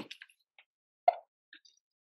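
Near silence broken by a single short, soft pop about a second in, followed by a couple of faint ticks.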